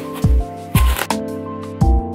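Background music with a steady beat. About three quarters of a second in, a large kitchen knife crackles and crunches through a watermelon's rind as the melon splits.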